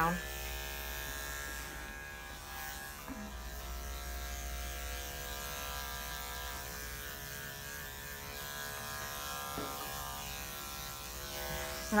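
Andis five-speed electric dog clipper with a guard comb, running with a steady hum as it trims a dog's slightly damp coat.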